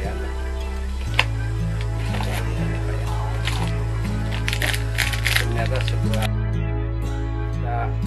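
Background music with a steady bass line, with the crinkling and crackling of a plastic wrapper being handled and torn open over it, most of it about four to six seconds in, plus one sharp click just after a second in.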